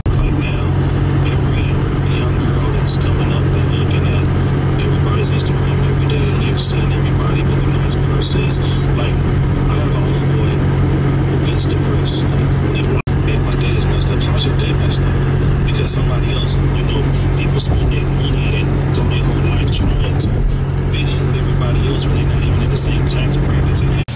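Road noise inside a moving car: a steady low drone, with scattered light ticks throughout.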